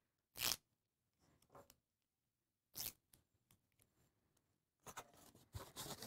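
Duct tape being torn into short strips by hand: two brief rips, about half a second in and near three seconds, with faint handling clicks between.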